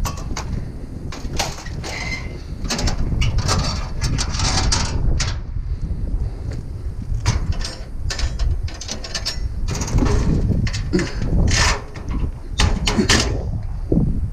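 Repeated metal clanks, rattles and scrapes as a refrigerator on a utility trailer is handled and a cargo net is pulled over the load, over a steady low rumble.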